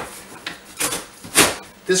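A dull knife cutting down the corner of a large corrugated cardboard box in three short strokes, the loudest a little after halfway.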